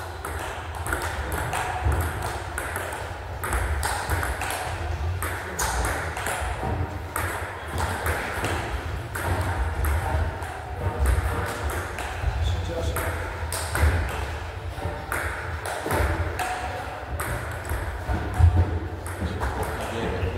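Table tennis rallies: the celluloid ball clicking sharply off the rackets and the table in quick back-and-forth strikes, over a steady low hum.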